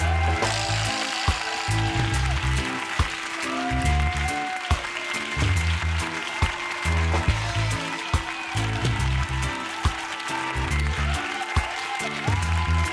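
Closing credits music with a heavy, repeating bass line and a steady drum beat.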